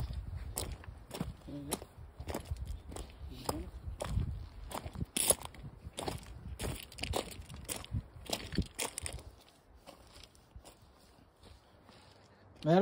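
Footsteps crunching on a loose slate and gravel path at a walking pace. The steps stop about nine seconds in.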